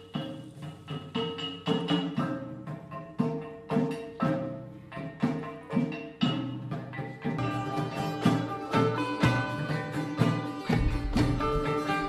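Music for an ethnic dance: struck, ringing gong-like percussion at about two beats a second, growing fuller and denser about halfway through, with a deep low part coming in near the end.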